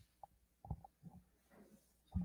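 Near silence, broken by a few faint knocks and a soft rustle of movement close to a handheld microphone.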